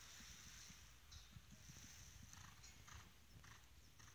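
Faint, soft hoofbeats of a horse cantering on an arena's sand surface, with a few brief higher sounds in the second half.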